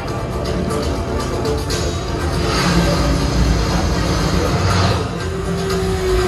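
Loud electronic-style film soundtrack music playing over a theatre's sound system, with a steady beat.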